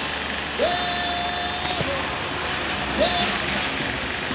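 A cartoon soundtrack playing from a TV set, heard over steady hiss: a long, flat held tone starting about half a second in, then a shorter one about three seconds in.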